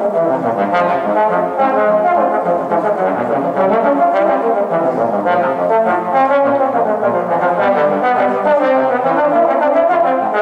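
Two bass trombones playing a duet, a busy passage of many short notes with no break.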